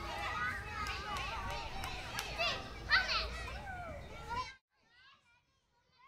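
Children shouting and playing, many high voices calling over one another, with adult chatter mixed in. The sound cuts off abruptly about four and a half seconds in.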